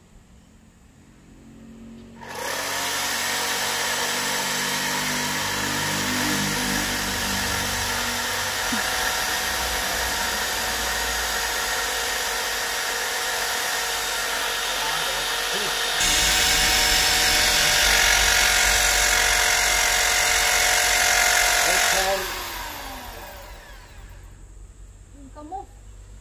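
Electric drill boring into a wall: the motor spins up about two seconds in, runs steadily under load, gets louder about two-thirds of the way through, then is released and spins down near the end.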